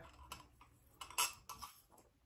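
A few faint clicks and light clinks from a drinking glass with a straw as it is sipped from and handled, the sharpest one about a second in.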